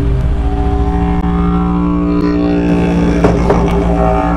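Didgeridoo playing a continuous low drone with a steady stack of overtones that brighten and shift about halfway through, plus a short sharp accent a little past three seconds in.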